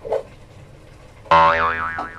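A cartoon 'boing' sound effect: a springy twang, starting sharply a bit over a second in, whose pitch wobbles up and down as it fades. A brief short sound comes right at the start.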